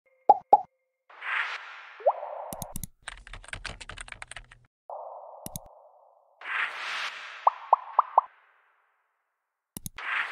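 Animated user-interface sound effects. Two quick pops come first, then a whoosh with a short rising blip. A rapid run of keyboard-typing clicks follows, then another whoosh, a single click, and a last whoosh topped by four quick pops.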